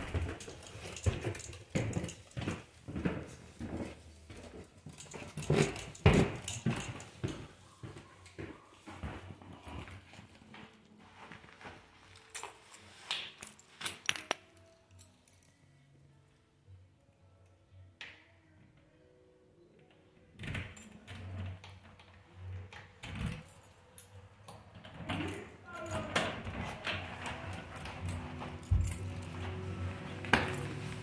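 Keys jangling with scattered clicks and knocks, busy in the first half. A quieter pause comes about halfway through, then more knocks and rattling near the end.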